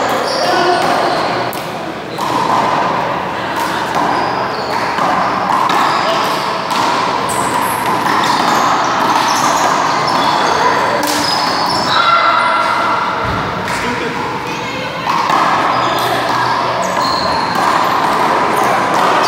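Indoor handball rally: the small rubber ball is struck by hand and smacks against the wall and floor again and again, with sneakers squeaking on the court between hits, all echoing in a large hall.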